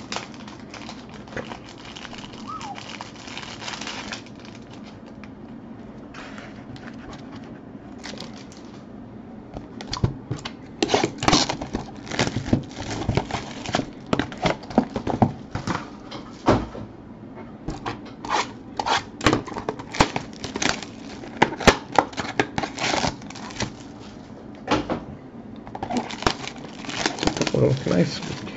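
Hands opening a shrink-wrapped trading-card hobby box and handling its cardboard and foil-wrapped packs: plastic wrap crinkling and tearing, with rustles and clicks. The handling turns busy after about ten seconds and stays so until near the end.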